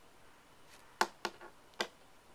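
Three sharp, hard clicks, about a second in and again near the end, like small hard taps on the dominoes or the tabletop.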